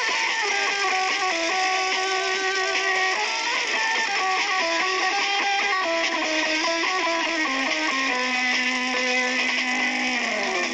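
Electric guitar played through a small combo amplifier: a single-note melody that steps from note to note and falls to a long held low note near the end.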